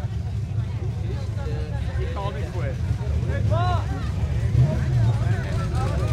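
Jeep Wrangler's engine running with a steady low rumble while the Jeep sits stuck in deep mud, with people's voices and shouts over it, one loud call about three and a half seconds in.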